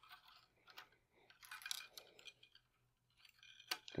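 Near silence with faint, light clicks and rustles of tennis string being drawn through the hole of a small plastic Retenser tensioner insert in the racket's grommet strip: a few scattered ticks, a short cluster a little before the middle, and a sharper click near the end.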